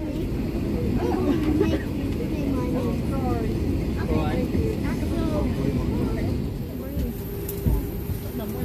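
Indistinct chatter of passengers inside an airliner cabin over a steady low cabin rumble, with one thump near the end.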